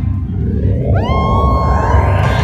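Transition effect in a dance medley: the track drops to a muffled low beat under a rising noise sweep. About a second in, a synth tone slides up in pitch and holds, building toward the next song.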